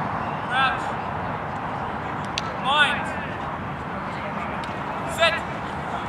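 Three short, high shouted calls about two seconds apart at a rugby scrum as it packs down, over a steady wash of open-air crowd and ground noise.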